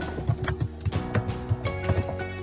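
Computer keyboard typing, a quick uneven run of key clicks, over background music of steady held notes.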